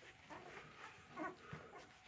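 A faint, brief dog whimper about a second in, with small scattered sounds and otherwise quiet room tone.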